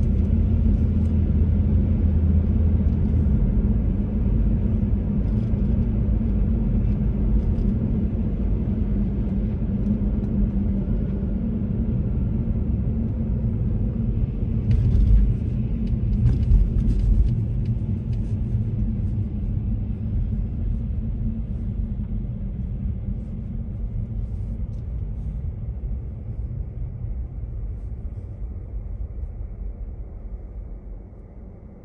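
Steady low rumble of a car's tyres and engine heard from inside the cabin while driving on a slushy, snow-covered road. It fades gradually over the last several seconds as the car slows behind traffic.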